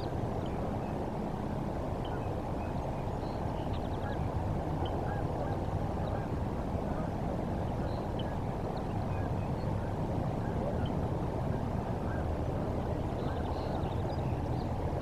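Scattered short calls of distant birds over a steady low outdoor rumble on an open river.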